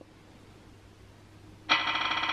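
A phone's spin-the-wheel app playing its spinning sound through the phone's speaker: a buzzy, rapid ticking that starts abruptly near the end, after a quiet stretch of room tone.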